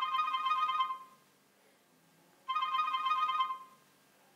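Smartphone ringtone signalling an incoming call: two rings, each about a second long, the second starting about two and a half seconds after the first.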